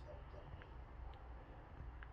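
Near silence: quiet room tone with a faint low hum and a couple of faint ticks. The charge port door makes no sound and does not open.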